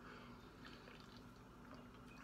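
Near silence with faint sips and swallows as a man drinks an energy drink from a can.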